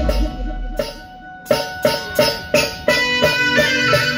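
Electronic keyboards playing an Adivasi-style timli tune. A low note dies away and there is a brief lull about a second in. Then quick, sharply struck notes start up, about three a second.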